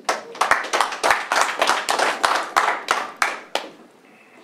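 A short round of applause from a small group of people clapping, dying away about three and a half seconds in.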